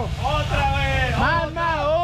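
Several people's voices talking and calling out, over a steady low rumble.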